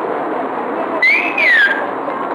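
A high whistling tone about a second in that rises briefly, then glides down and stops, over steady street background noise.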